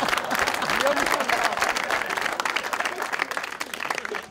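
Studio audience applauding, a dense patter of many hands clapping that gradually dies down.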